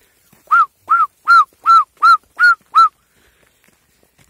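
A herder whistling to drive a flock of goats and sheep: seven short, quick whistles in a row, each rising and falling in pitch.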